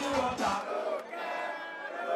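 Concert crowd shouting and singing along over the PA. The song's bass beat drops out about half a second in, leaving the voices.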